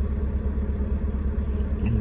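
Semi truck's diesel engine idling, heard from inside the cab as a steady low rumble with a slight throb.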